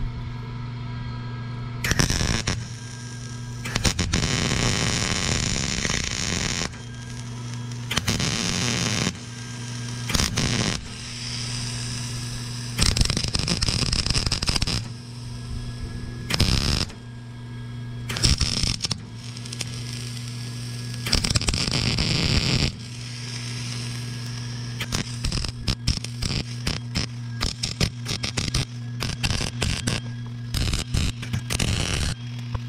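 Wire-feed welder arc crackling in a string of short bursts as weld is built up inside a snapped steel pipe-fitting stub in a hydraulic control valve, with quicker stuttering bursts near the end. A steady electrical hum carries on between the bursts.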